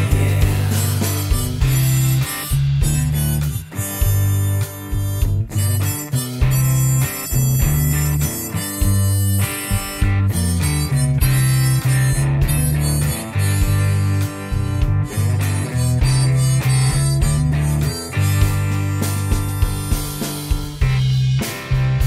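Instrumental passage of a blues-rock song: a harmonica playing a solo over an electric bass guitar line and a steady beat.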